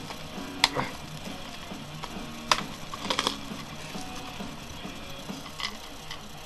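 Sharp plastic clicks and crinkling from a sealed cassette being unwrapped and its case opened: single clicks about half a second in and at two and a half seconds, then a quick cluster around three seconds, over faint background music.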